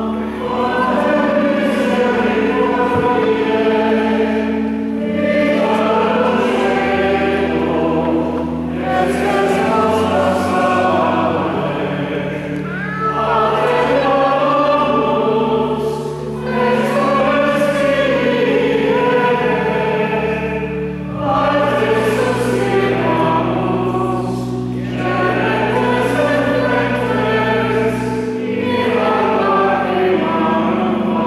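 Church choir singing sacred music in phrases of about four seconds, with long-held low chords sounding beneath that shift every several seconds.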